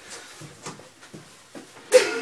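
A tall wooden bookcase being walked across the floor by hand: faint scuffs and knocks as it rocks and shifts, with one louder, sharp sound near the end.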